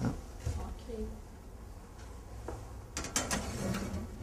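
A countertop toaster oven being loaded with a baking dish: a quiet stretch, then a short cluster of quick clicks and clatter near the end as the dish and the oven's door and rack are handled.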